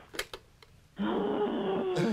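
A few light clicks of a telephone handset being lifted, then, about a second in, a steady rough buzz of open phone-line noise starts, with a faint hum and no caller's voice coming through.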